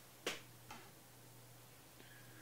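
Two short clicks, the first louder, about a quarter second and three quarters of a second in, over a faint steady low hum.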